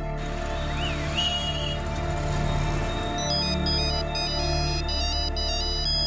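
Film background score of sustained low drones with a few short high chirps near the start; from about three seconds in a mobile phone ringtone plays a high, stepping electronic beeping melody over it.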